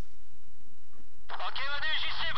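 A voice over a two-way radio, thin and band-limited, comes in a little over a second in, with pitch swinging up and down, over a steady low rumble.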